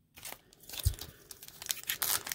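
Crinkling and tearing of a foil trading-card pack wrapper with cards being handled, in scattered small crackles, with one soft low thump near the middle.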